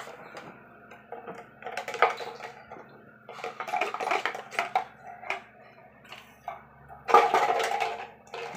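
Yellow plastic toy spoon clattering and scraping in a clear plastic cup as a toddler plays with it, in irregular bursts, with the loudest clatter about a second before the end.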